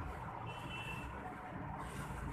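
Steady low rumble of a motor vehicle running in the background, with one brief high beep about half a second in.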